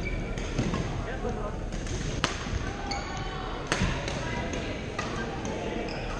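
Badminton rackets hitting a shuttlecock with sharp cracks, the two loudest about two seconds and nearly four seconds in, over shoe squeaks, footfalls on the court floor and background chatter, all echoing in a large gym hall.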